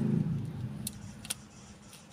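A low rumble fading out over the first second, with two faint clicks as a pen-and-balloon toy gun is handled and its balloon stretched back.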